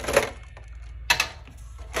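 Clicks and light clatter of a clear plastic tin insert and foil booster packs being handled, with one sharp click just after the start and another about a second in.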